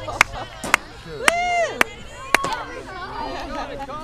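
Sideline voices shouting and calling out during a soccer game, with five sharp snaps in the first two and a half seconds, about half a second apart.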